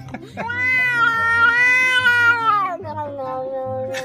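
Domestic cat giving one long drawn-out yowl of about two seconds, rising slightly and then falling, followed by a quieter, lower held note near the end.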